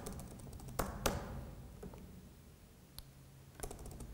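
Laptop keyboard keystrokes: a few separate taps, two about a second in, one near three seconds, and a quick cluster of three or four near the end.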